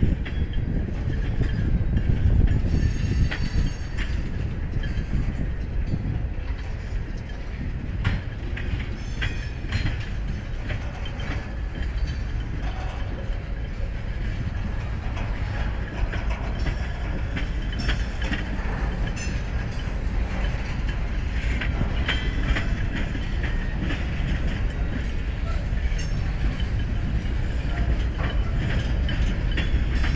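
CSX freight train's cars rolling steadily past: a continuous low rumble with the clicking of wheels over rail joints.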